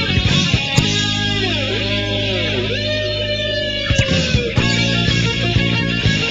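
Hard rock band playing an instrumental passage: an electric guitar lead with notes bent down and back up several times, then a long held note that drops off about four and a half seconds in, over bass and drums.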